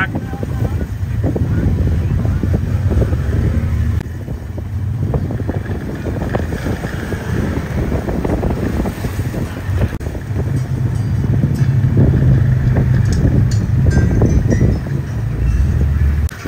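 Wind rumbling on the microphone over a low engine hum from off-road vehicles, with indistinct voices. The hum is steadiest and loudest for a few seconds past the middle.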